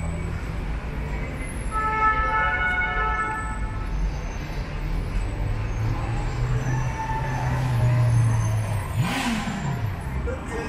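Slow city traffic with a steady low rumble of car engines. A car horn is held for about two seconds near the start, and near the end an engine revs up and down with a burst of noise.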